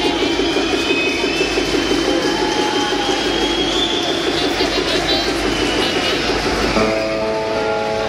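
A live rock band plays a loud, steady droning passage: a dense, fluttering wall of amplified guitar sound with a high tone that slowly rises. About seven seconds in, it settles into a chord of steady held notes.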